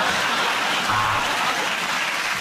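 Studio audience laughing and applauding, a steady wash of clapping.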